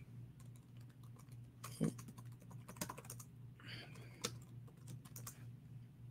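Faint typing on a computer keyboard: a quick, irregular run of light key clicks, as a name is typed into a search.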